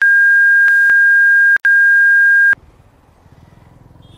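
Censor bleep: a loud, steady, single-pitched electronic beep lasting about two and a half seconds, with a brief break about one and a half seconds in, cutting off abruptly. Faint road and engine noise follows.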